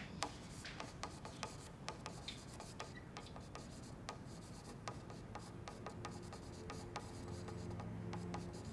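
A marker pen writing on a glass wall, faint: quick, irregular strokes and taps of the tip against the glass.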